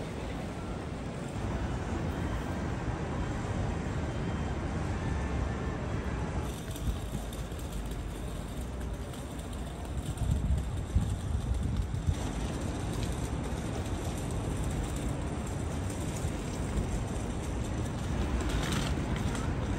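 Busy city street ambience: a steady low rumble of road traffic, with wind buffeting the microphone and getting louder for a moment about ten seconds in.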